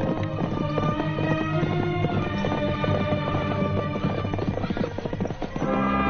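Horses' hoofbeats clip-clopping in quick, dense succession over a film score. The hoofbeats thin out and fade near the end as a fuller sustained orchestral chord comes in.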